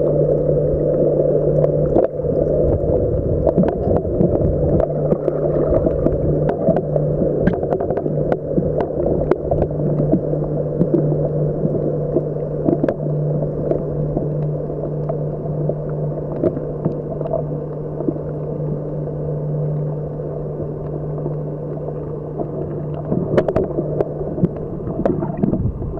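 Muffled underwater sound picked up by a camera in a waterproof housing while snorkeling: a steady dull rush with a constant low hum, dotted with scattered sharp clicks and crackles.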